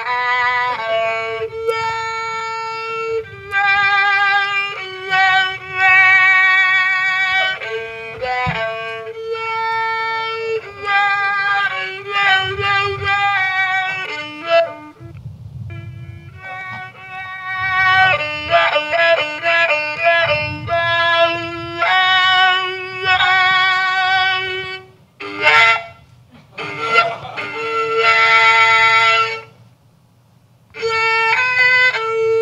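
Violin melody played from a small pillow speaker held inside the mouth, the mouth shaping its tone as it sounds into a microphone. It runs as held, wavering notes and quick runs, with brief breaks about halfway and near the end.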